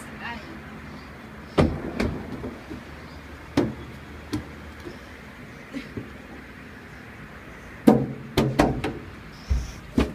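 Knocks and thuds of shoes and hands striking a hollow plastic playground slide as someone climbs up it: scattered single knocks, then a quick cluster near the end.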